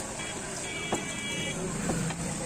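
Street traffic noise with a high, steady horn-like tone sounding for over a second, and a few soft clicks as paper is handled around an egg roll.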